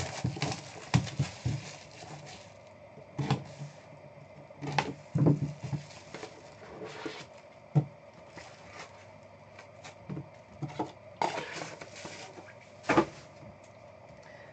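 Hands unwrapping a sealed trading-card box: cellophane shrink wrap crinkling and rustling, the cardboard lid coming off, and scattered light knocks of the box and a plastic card holder on the table.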